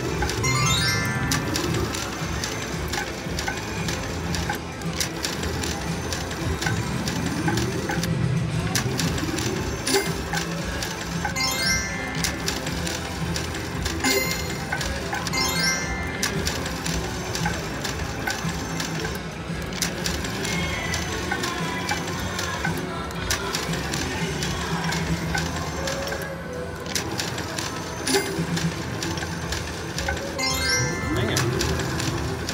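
Cash Machine slot machine spun over and over in quick succession: electronic reel-spin sounds and short chiming jingles every few seconds, with rising sweeps on some spins, over steady background noise.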